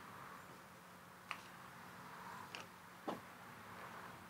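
Faint handling sounds as a fabric diffusion panel is hooked onto the small clasps inside a softbox: three short soft clicks and rustles, over a low steady room hum.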